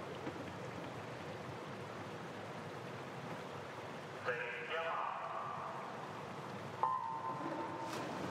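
Hushed swimming-pool arena before a race start: a short voice call over the loudspeakers about halfway through (the starter's 'take your marks'), then a couple of seconds later the sudden electronic start beep, one steady tone lasting about a second, that sends the swimmers off the blocks.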